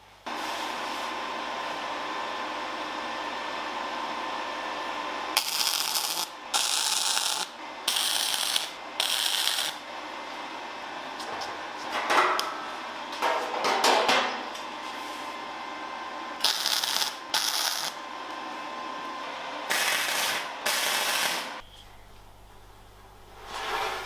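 MIG welder arc in short bursts of under a second each, filling holes in a bare steel fender panel with tack welds: four bursts in quick succession, then two, then two more, with a few knocks of handling between. A steady machine hum runs beneath at the start.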